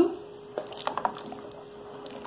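Pot of rice simmering: faint bubbling with a few soft pops, over a faint steady hum.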